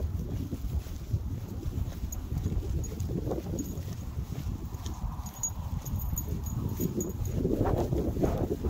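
Low rumble of wind buffeting a handheld phone's microphone during a dog walk, with soft irregular steps, growing louder near the end.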